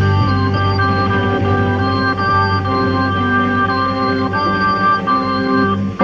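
Hammond organ holding sustained chords that change every second or so over a steady low bass line, in a band recording with an upper treble cut-off.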